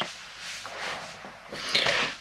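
Quiet room tone, with a soft rustle of a person moving and settling into a seat near the end.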